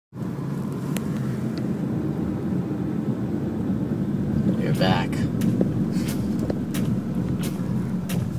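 Steady low drone of engine and tyre noise heard from inside a moving car's cabin, with a brief voice about five seconds in and a few light clicks.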